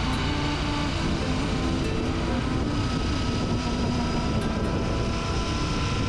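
Royal Enfield Interceptor 650's parallel-twin engine running at a steady cruise, mixed with wind and road noise from riding. The sound holds an even level throughout.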